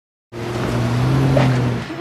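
A car's engine and tyres running steadily. It cuts in abruptly after a moment of dead silence and stops just before the end.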